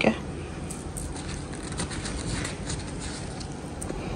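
Steady background noise with a few faint light clicks and rustles of handling.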